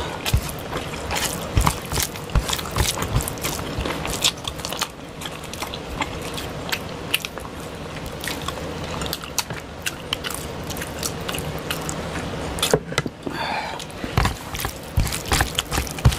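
Close-up mukbang eating sounds: fingers mixing rice with fish curry and mouths chewing, a dense run of quick clicks throughout.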